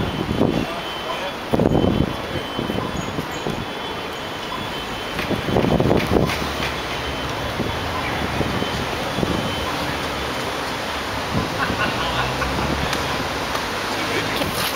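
Steady outdoor city noise with indistinct voices, swelling briefly twice in the first half.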